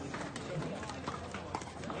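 A few scattered hollow pops of pickleball paddles striking a plastic ball, from rallies on other courts, over a murmur of voices.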